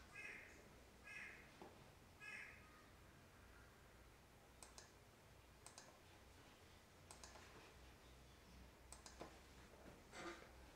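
Near silence: faint room tone. Three faint calls come about a second apart in the first three seconds, and a few faint, scattered clicks follow.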